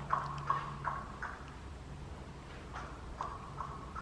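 Horse hooves clip-clopping at a walk: a run of a few steps, a pause, then a few more steps near the end.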